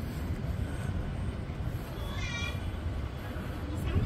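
Steady low outdoor rumble, with one short high-pitched vocal call about two seconds in.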